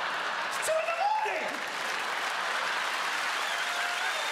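A large theatre audience applauding steadily after a punchline.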